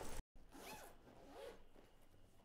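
A louder sound cuts off abruptly at the start. Then comes a faint zipper on a trumpet case being drawn open, rasping in a couple of pulls.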